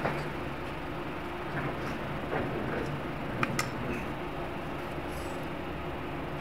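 Steady room background noise, a low hum with hiss. About three and a half seconds in come a couple of small sharp clicks as the small battery-powered device is handled.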